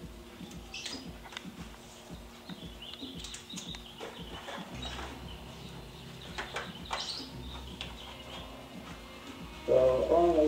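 Rustling and small clicks of a respirator and a face-shield headband being handled and put on, over a low steady hum. A man's voice comes in just before the end.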